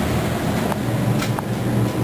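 Basement HVAC equipment running with a steady low hum, with a few faint ticks.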